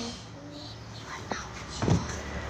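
Faint, indistinct voices in the background over room noise, with a single loud thump near the end as something knocks against the table or the phone.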